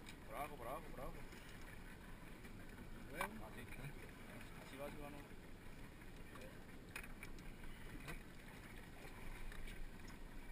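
Low, steady wash of sea water and wind around a small open fishing boat, with a few faint clicks.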